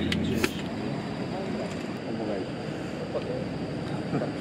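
Road noise inside a moving car, a steady rumble and hiss, with a couple of sharp clicks right at the start.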